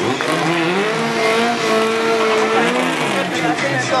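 Drag-racing car's engine revved at the start line. It climbs about half a second in, holds high for about two seconds, then drops back.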